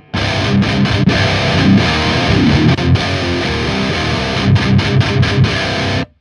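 Heavily distorted electric guitar riffing through a KSR Ceres distortion preamp pedal, with a few short stops in the riff. It starts at once and cuts off sharply at the end.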